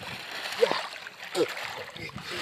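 Shallow river water splashing and sloshing as a hand and a multi-pronged fish spear work in it, with two short vocal sounds about half a second and a second and a half in.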